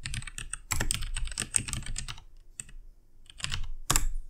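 Typing on a computer keyboard: a quick run of keystrokes about a second in, then a few scattered keys and a sharper, louder keystroke near the end.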